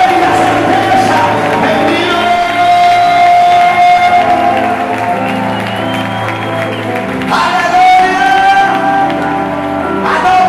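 Live church worship music: sustained chords from the band with a man's voice singing long held notes over them. The chord changes about seven seconds in.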